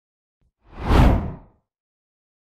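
A single whoosh sound effect that swells and fades away within about a second.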